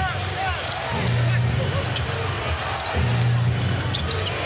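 Basketball game audio from an arena: a ball bouncing on the hardwood court amid crowd noise and faint voices. A low hum swells and fades about every two seconds.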